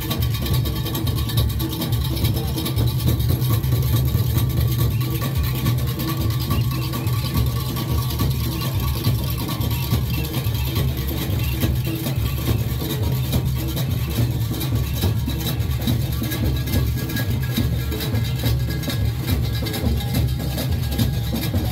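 Junkanoo music from a marching group: many goatskin drums beaten together in a fast, dense, unbroken rhythm with a heavy low boom, along with other percussion.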